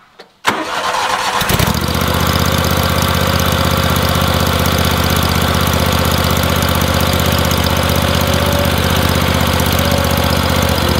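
Ventrac compact tractor's engine being started: a short burst of cranking about half a second in, catching after about a second, then running steadily.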